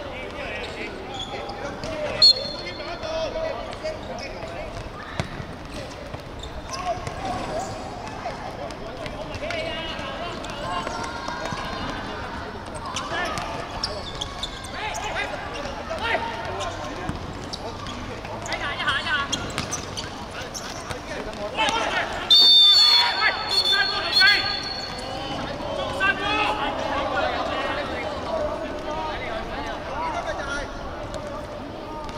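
Referee's whistle: a short blast about two seconds in, then a longer and louder blast about 22 seconds in. In between, players shout and the football thuds as it is kicked and bounces on a hard court.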